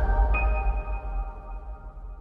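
Closing logo music sting: a sustained chord over a deep bass tone, with a high ping-like tone joining about a third of a second in, all slowly fading out.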